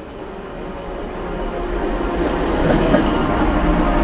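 Washington Metro train pulling into an underground station, its rumble growing steadily louder.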